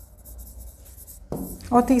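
Faint scratching of a stylus writing across an interactive display screen.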